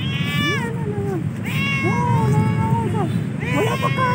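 Domestic cat meowing about three times in rising-and-falling calls, the middle one the longest, over a steady low background rumble.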